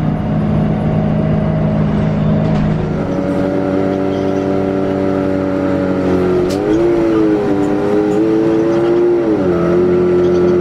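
City bus engine and drivetrain running, heard from inside the bus as it drives: a steady, loud drone whose pitch steps up about three seconds in, then rises and falls a few times in the second half as the bus changes speed.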